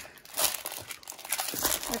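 Plastic wrapper of a packaged mini hockey jersey crinkling as it is handled, in irregular crackles that are loudest about half a second in.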